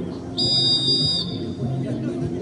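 A referee's whistle blown once, a steady, high, shrill blast just under a second long starting about a third of a second in.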